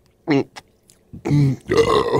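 A man gulping a drink, one short throaty swallow, then a long, loud burp starting a little over a second in.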